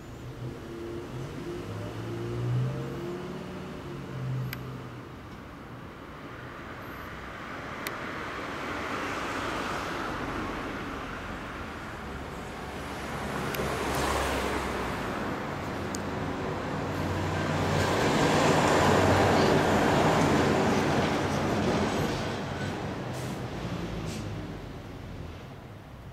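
Kawasaki Zephyr 1100's air-cooled DOHC inline-four idling steadily through a Mid-Knight four-into-one exhaust. Passing road traffic swells up and fades, once around the middle and louder near the end.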